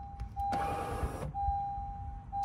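Blue Ox Patriot 3 tow brake controller sounding its manual-brake alert: a steady mid-pitched beep tone in long beeps with a short gap about once a second. About half a second in comes a brief burst of small-motor noise, as the unit's actuator presses the towed car's brake pedal.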